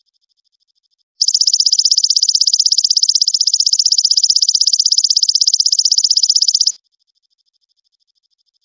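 A singing insect's loud, fast, evenly pulsed high trill starts abruptly about a second in, holds steady for about five and a half seconds, then cuts off suddenly. A faint higher trill continues underneath before and after it.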